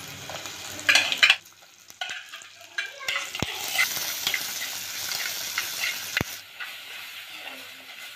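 Green mango slices frying in hot oil with shallots, chillies and curry leaves, sizzling as a spatula stirs them around the pan, with a couple of sharp clicks of the spatula against the pan.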